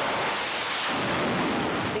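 Fighter jet's engines at full launch power as it is shot off an aircraft carrier deck by a steam catapult, heard as a loud, steady rush of noise with the hiss of catapult steam.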